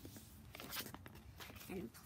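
Folded paper being pressed flat and handled on a plastic board: a few short, soft paper crinkles and taps. A child says "and" near the end.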